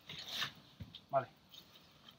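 Backpack fabric and packed gear rustling briefly as hands push items down inside the pack.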